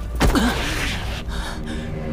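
A short pained gasp from a male voice, about a third of a second in, over a low rumble, followed by steady held low tones.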